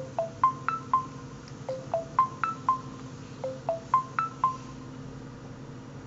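Nokia Lumia 800's voice-dictation processing chime: a short five-note figure, rising then falling, played three times over about four and a half seconds while the phone turns the spoken message into text. A faint steady hum lies underneath.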